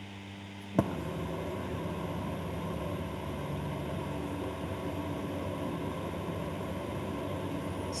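A sharp click about a second in, then a steady low hum with some noise in it.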